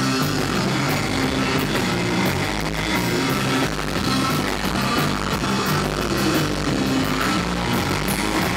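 Surf rock band playing: electric guitar, electric bass and drum kit together, with a stepping bass line under steady cymbal strokes.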